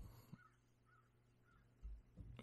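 Near silence: room tone, with about three very faint short calls in the middle and a soft low thump near the end.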